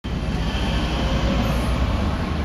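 Steady outdoor background noise: a low rumble with an even hiss over it, no single event standing out.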